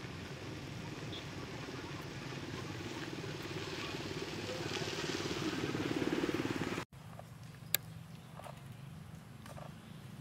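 A motor vehicle engine running steadily and growing louder as it approaches, cut off abruptly about seven seconds in. Quieter outdoor ambience follows, with one sharp click about a second later.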